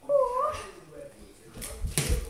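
A child's short, high-pitched cry that wavers up and down in pitch, then a sharp thump of a pillow blow near the end.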